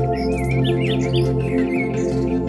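Ambient music played on a Korg Wavestate synthesizer, slow held chords, with birdsong mixed in: many quick high chirps over the chords.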